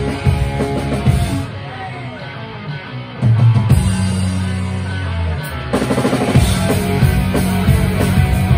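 Live rock band playing loud: drum kit, electric guitar and bass guitar. The band drops to a quieter passage about a second and a half in, comes back loud with a held bass note after about three seconds, and the drums come back in fully near six seconds.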